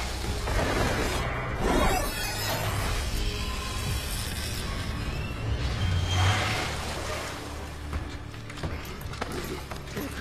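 Film soundtrack: a low, droning score overlaid with noisy swells of sound effects, the loudest about two seconds in and again around six seconds.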